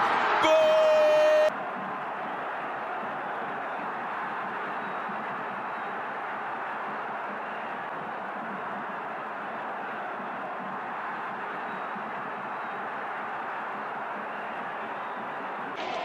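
A football commentator's long, held shout of "Gol!", cut off abruptly about a second and a half in. It is followed by a steady, even murmur of stadium crowd noise with no commentary.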